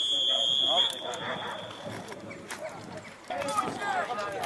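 Referee's whistle blown in one long, steady blast of about a second, signalling the kick-off of the second half. Then players shout across the pitch.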